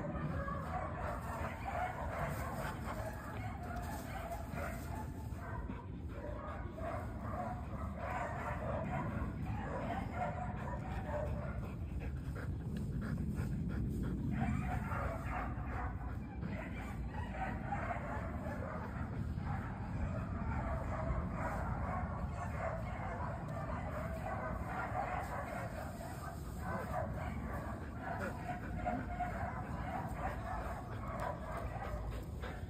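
A dog vocalizing on and off over a steady low rumble.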